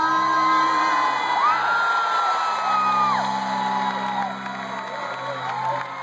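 Live pop concert music with long held notes over a sustained low accompaniment, and the audience whooping and cheering; the sound eases down in the second half.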